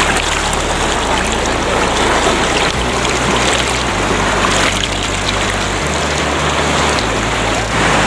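Shallow, fast river rushing and splashing over rocks: a loud, steady wash of white-water noise.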